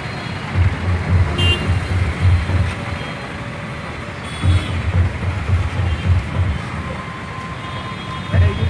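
Road traffic noise heard from a moving vehicle, with a low rumble that swells and fades unevenly.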